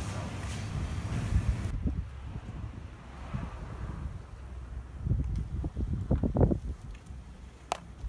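Wind buffeting the microphone in irregular low gusts, strongest about five to six and a half seconds in, with a sharp click near the end. The first couple of seconds are a steady indoor hiss that cuts off abruptly.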